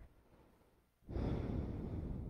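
A slow, deep breath, heard as a breathy rush that starts about a second in and lasts about a second and a half.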